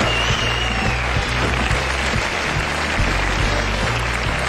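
Upbeat band music with a steady bass line over audience applause, as a short transition tune.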